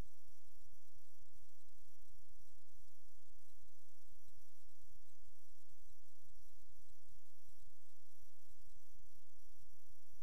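Steady low electrical hum with hiss and two faint high-pitched whines: the inspection camera system's own noise on its audio track as the camera is pushed down the sewer line.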